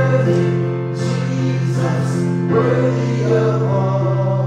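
Worship song: a man singing to his own Yamaha electronic keyboard accompaniment, held chords under the voice, with a chord change about two and a half seconds in.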